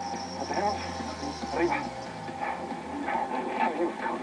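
Indistinct voices and movement sounds of a paramedic crew at work over a patient, heard through a television's speaker with a faint steady hum beneath.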